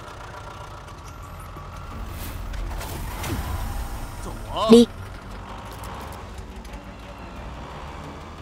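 A car's engine running with a low rumble that swells and then eases off in the middle.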